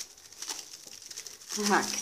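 Thin clear plastic bag crinkling and rustling as it is handled and twisted shut.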